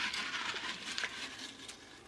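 Folded paper slips rustling as a hand stirs them inside a glass jar, with a few light clicks, dying away near the end.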